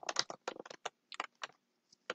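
Typing on a computer keyboard: about a dozen quick, uneven keystrokes over the first second and a half, then a brief pause.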